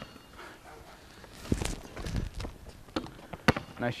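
A basketball on an outdoor asphalt court: a few scattered thuds and scuffs, the sharpest about three and a half seconds in.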